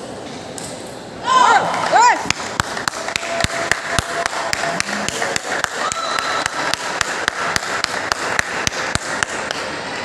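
Table tennis balls clicking off bats and tables in a large hall, an irregular patter of several hits a second from more than one table. Two loud short squeaks come about a second and two seconds in.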